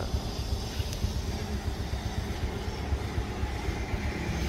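Honda Wave 110's single-cylinder four-stroke engine idling steadily, a low even rumble.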